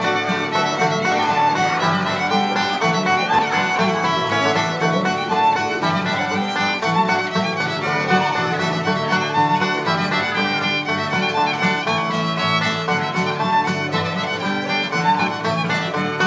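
Live acoustic bluegrass jam: a fiddle carries the tune over a banjo and two acoustic guitars playing rhythm.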